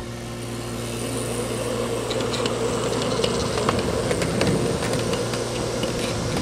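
Steady mechanical hum of a 1-inch scale diesel-style model locomotive running along the track with a rider car, with a few light clicks in the middle.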